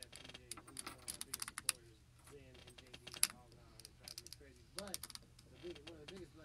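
Low, indistinct voices talking, with bursts of rapid, irregular clicking and tapping over them.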